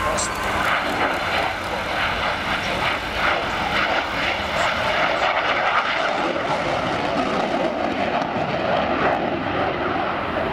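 Steady jet roar from a MiG-29 fighter's twin RD-33 turbofan engines during a slow, low pass, with voices over it.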